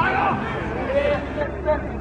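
Voices shouting and calling out across a football pitch during play, over a low murmur of other voices; one loud high-pitched shout at the start.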